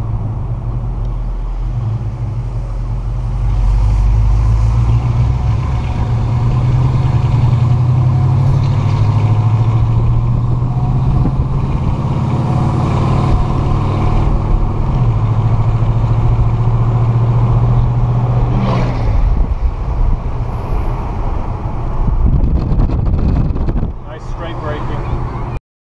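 V8 engine of a 1964 Pontiac GTO tribute convertible running steadily under way, heard from the open cabin along with wind and road noise. The engine note grows louder about four seconds in, drops a little in pitch around fifteen seconds, and eases off about nineteen seconds in.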